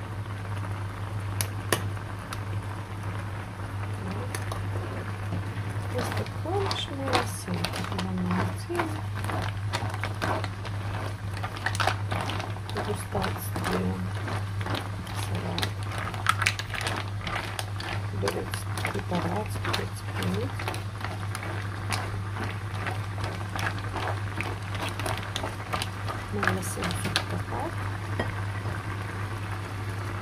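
Mussels bubbling in a pan of wine sauce, with a spatula stirring through the shells and clicking against them and the pan from about six seconds in. A steady low hum runs underneath.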